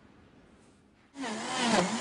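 Near silence for about a second, then a blender starts up and runs loud, its motor whine wavering in pitch as it mixes a drink.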